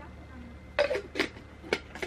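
A few light, sharp clicks and knocks as a bamboo travel mug is handled and set down, about three in the second half, after a brief low murmur.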